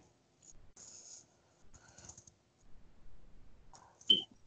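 Near silence with a few faint, scattered clicks and rustles.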